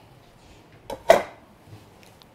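Frozen banana pieces tipped from a bowl into a blender jar: a faint tap, then one sharp knock with a brief ring about a second in.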